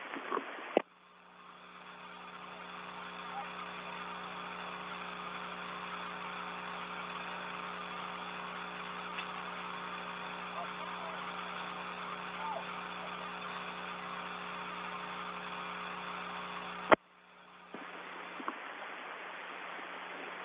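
Steady hiss with a low, even hum on the live audio from inside the International Space Station, the constant background of its cabin fans and equipment. The hiss fades in just under a second in. A sharp click comes about 17 s in, the sound drops out briefly, then the hiss returns.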